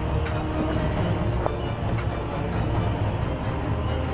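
Background music laid over the footage, steady and dense in the low end.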